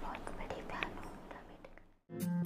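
Faint, breathy voice sounds like a whisper, with a few soft clicks, fading to silence near the end.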